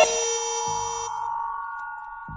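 End of a minimal glitch electronic track: held synthesizer tones fading out. The lower tone and the high shimmer cut off about a second in, and there is a short low thump shortly before.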